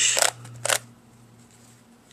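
A ShengShou 3x3 plastic speed cube being turned by hand: two quick scraping clicks of its layers turning, about half a second apart, in the first second.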